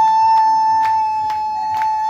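A high voice holding one long, steady note over rhythmic hand clapping.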